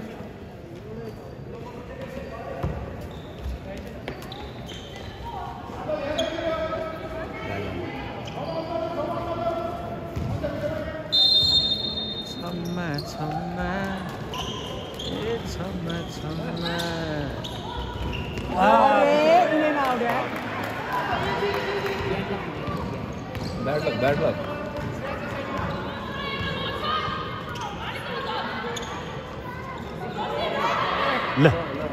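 Basketball being dribbled on a hardwood gym court during play, with players and spectators calling out in the hall. A brief high whistle comes about eleven seconds in.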